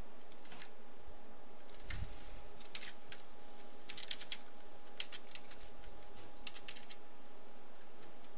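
Typing on a computer keyboard: irregular bursts of keystrokes, over a steady faint hum.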